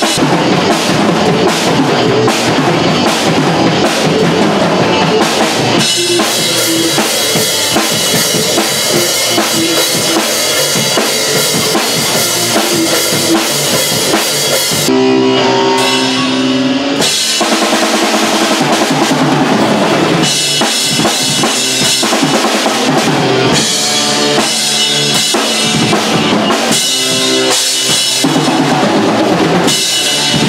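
A rock band rehearsing loud: electric guitars and a drum kit playing a riff together. About halfway through, the drums stop for roughly two seconds, leaving only a few held guitar notes, then the full band comes back in.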